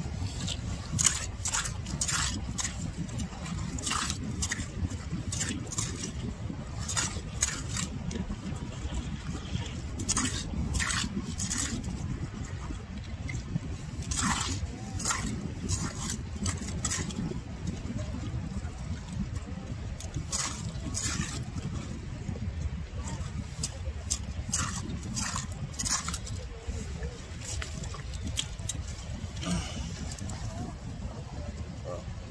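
A short-handled metal clam rake digging into wet, shell-filled mud, its tines scraping and clicking against shells in irregular strokes, over a steady low rumble.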